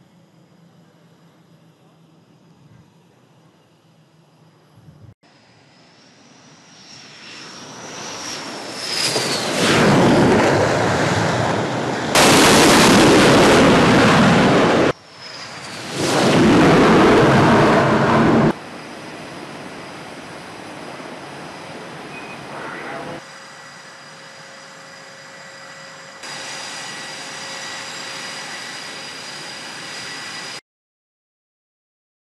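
F/A-18 Super Hornet jet engines spooling up on a carrier flight deck, a high whine rising about five seconds in and swelling to a very loud jet blast through the middle, the noise of full power for a catapult launch. After a break near the middle and a drop after about eighteen seconds, a quieter steady jet whine carries on to the end.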